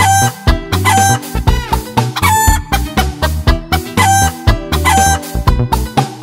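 Short rooster crows, repeated about five times in time with a children's song backing track, over steady bass and drums.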